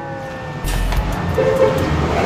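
A horn-like tone slides slowly down in pitch and fades out about half a second in. A rumbling noise then takes over.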